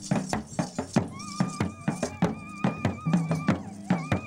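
Barrel drums beaten with sticks in a quick, steady rhythm, about four to five strokes a second. A high wavering note is held over the drumming from about a second in, stops, and starts again near the end.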